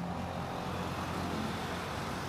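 Steady background hum and hiss with a low drone underneath, unchanging throughout.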